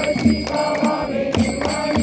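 Devotional chanting to Ganesh over rhythmic drum beats, with a steady high ringing tone running through it.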